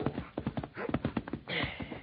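Horse hoofbeats clip-clopping as the rider reins in to a halt, a radio-drama sound effect on a muffled, band-limited 1940s broadcast recording. The hoofbeats thin out toward the end.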